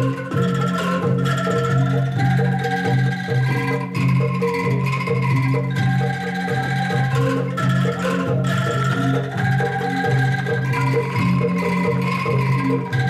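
Angklung ensemble playing a melody: tuned bamboo angklung shaken together in held notes that change every second or so, with gong and drum accompaniment.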